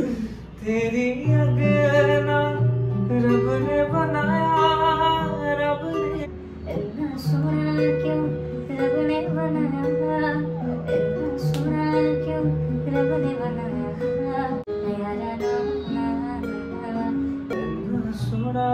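A man singing a slow song with long held notes, accompanying himself on an acoustic guitar.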